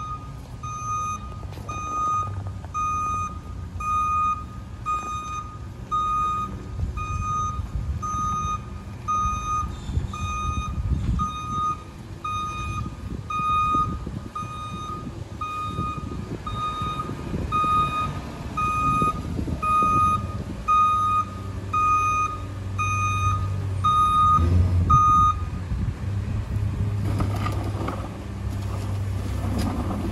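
Backup alarm on a Mack rear-loader garbage truck beeping steadily as the truck reverses, over its diesel engine running. Near the end the beeping stops as the truck halts, and the engine grows louder.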